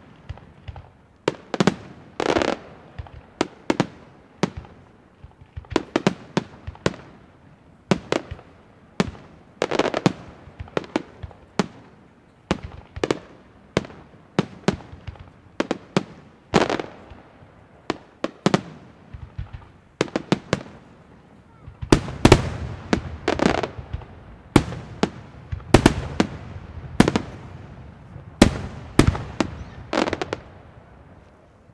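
Aerial fireworks shells bursting in a steady series of sharp bangs, each trailing off briefly. About two-thirds of the way through, the bangs come thicker and louder.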